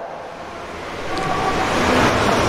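Steady rushing noise that dips at first and grows louder through the second half.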